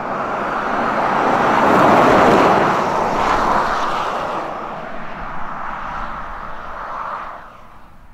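Tyre and road noise of a BMW iX electric SUV driving by with no engine note, swelling to a peak about two seconds in, then easing off and dying away near the end.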